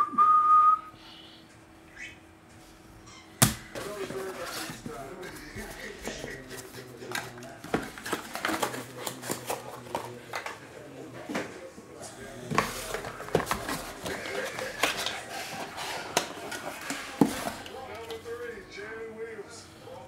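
A short whistled note just after the start, then a sharp click and a long run of small clicks, taps and rustles: trading cards, a plastic magnetic card holder and card boxes being handled on a table.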